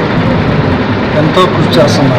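A man speaking Telugu close to the microphones, over a steady background din.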